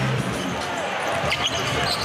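Arena crowd noise with a basketball being dribbled on the hardwood court.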